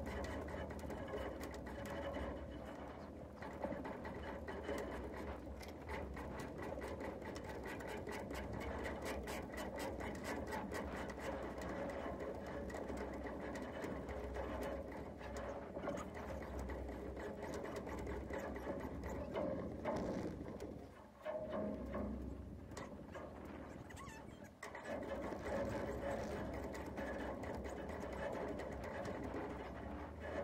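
Rapid, steady mechanical clicking over a low hum, typical of a sailboat winch's pawls as it is cranked to hoist a person up the mast on a halyard. It breaks off briefly twice, about two-thirds of the way through.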